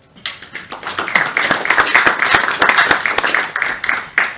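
Audience applauding: many hands clapping together, building up over the first second and dying away near the end.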